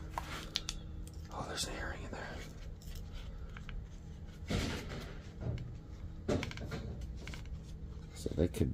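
A small white box handled and shaken in gloved hands, with faint clicks from a loose earring inside it and a few short rustles, over a steady low hum.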